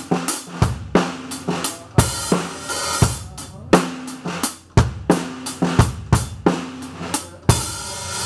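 A late-1960s Rogers Holiday drum kit with a Gretsch Bell Brass snare being played with sticks in a steady rock pattern of drum strikes several times a second. A cymbal crash rings out about two and three seconds in and again near the end.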